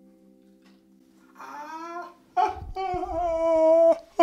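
The last chord of a worn old piano dies away. From about a second and a half in, a voice gives a long held cry that rises in pitch, then holds, and is loudest near the end.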